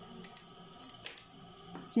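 Fabric scissors making a few short, sharp clicks and snips at the cloth.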